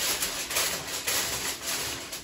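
Aluminium tin foil crinkling and rustling as it is pressed and crimped down over the rim of a metal mixing bowl, an irregular crackle of small ticks.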